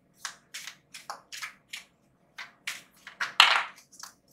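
A deck of oracle cards shuffled by hand, short papery swishes about three a second, with a louder rush of cards about three and a half seconds in.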